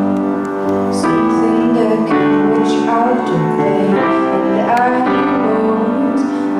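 A woman singing live into a microphone, accompanied by piano chords struck about once a second and left to ring.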